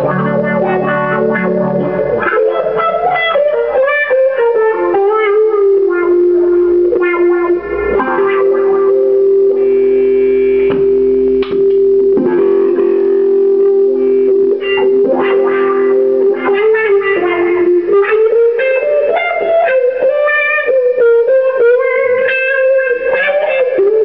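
Electric guitar with a clean-ish tone played through a wah pedal: picked single-note lines with a long held note in the middle, and notes gliding in pitch near the start and again later.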